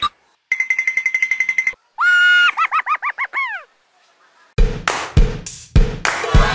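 Edited-in cartoon sound effects: a rapidly warbling beep for about a second, then a run of short falling whistle-like notes. Background music with a regular beat starts near the end.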